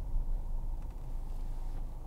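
Steady low rumble of road and drivetrain noise inside the cabin of a 2015 Mercedes-Benz C300 BlueTEC Hybrid, a diesel-electric car, as it rolls along slowly in traffic.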